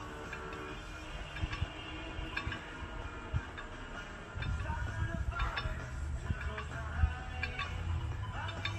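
Music, with a strong bass line coming in about halfway through.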